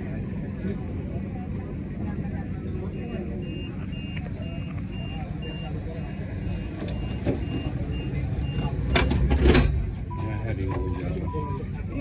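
Siemens Combino Supra tram at a stop: a high-pitched warning beep repeats about three times a second for several seconds as the doors are about to close, then a loud double thump, typical of the doors shutting. A steady low hum from the tram's equipment runs underneath, with voices near the end.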